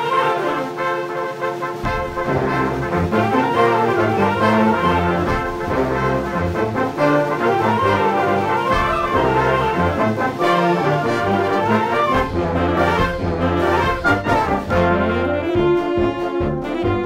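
Youth concert band playing, woodwinds and brass together with the brass prominent; low bass instruments join in about two seconds in.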